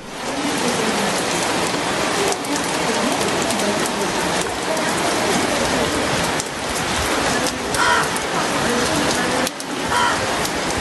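Rain falling steadily, recorded through a phone's microphone.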